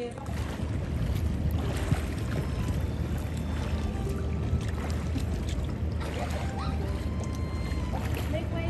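Outdoor swimming pool: water lapping and splashing around people standing in it, over a steady low rumble, with faint voices.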